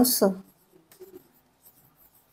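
Marker pen writing on a whiteboard: faint, short scratching strokes of the felt tip, with a slightly louder stroke about a second in.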